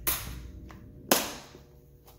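Clear plastic compartment box clicking as it is closed and handled: two sharp plastic clicks about a second apart, the second louder.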